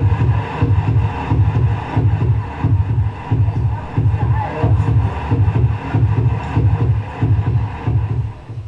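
The sound component of a heart-rate-driven searchlight installation, played back from a video: a loud low beat repeating about twice a second with a fainter layer of higher sound over it.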